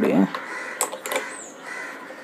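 Plastic clicks from handling a ring light's tilt bracket and knob on its stand mount, two sharp clicks close together near the middle.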